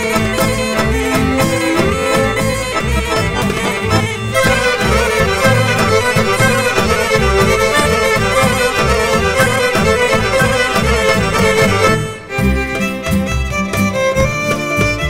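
Serbian folk dance music with a steady beat, apparently led by a fiddle. The music changes about four seconds in and drops briefly near twelve seconds.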